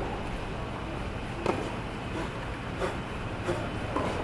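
A few sharp knocks of a tennis ball being hit and bouncing on a clay court, the loudest about a second and a half in, over a steady low rumble.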